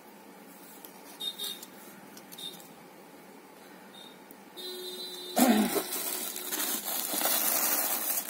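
Chiffon saree fabric rustling loudly close to the microphone as the sarees are handled, starting a little past halfway after a quiet stretch with a few faint ticks; a brief high-pitched tone sounds just before the rustling begins.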